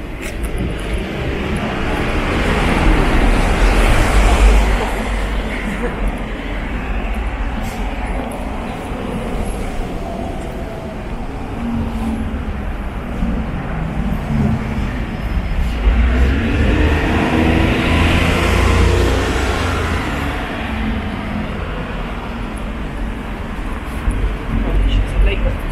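City street traffic: road vehicles passing, with two louder passes that swell and fade, the first peaking about four seconds in and the second about eighteen seconds in.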